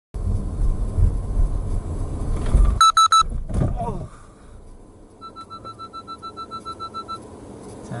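Car driving with a low engine and road rumble, then three quick horn blasts about three seconds in as a motorcycle cuts in front, followed by a short sliding sound as the car brakes to a stop. A second later a rapid electronic beeping, about seven beeps a second, runs for roughly two seconds inside the stopped car.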